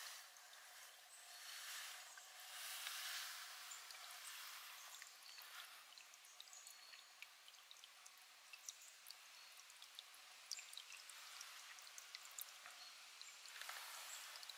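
Spring water pouring in a thin stream from a metal pipe spout into a shallow puddle: a faint, steady splashing with small drips scattered through it.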